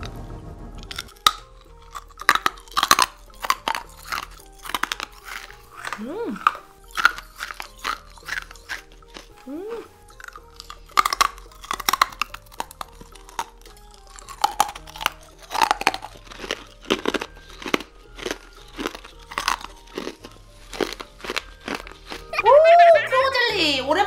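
Purple rock candy (crystallized sugar on a stick) being bitten and chewed: hard, crisp crunches coming irregularly, many times over.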